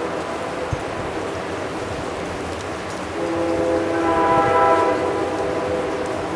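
Distant train horn sounding a chord of several steady tones for about two and a half seconds, starting about three seconds in, over a steady rushing background noise.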